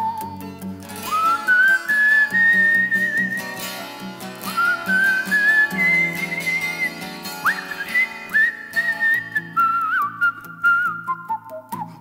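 A whistled melody over a 12-string acoustic guitar picked in a steady repeating pattern; the whistle slides up into several of its notes.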